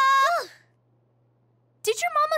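A cartoon character's voice holding one high, steady sung note that drops in pitch and stops within the first half second. Then near silence, with speech starting just before the end.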